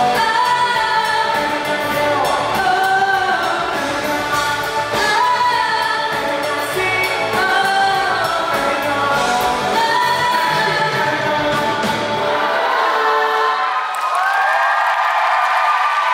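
Live band playing a pop song, a woman singing the lead over drums and bass. About twelve seconds in, the drums and bass drop out and the singing carries on over lighter accompaniment.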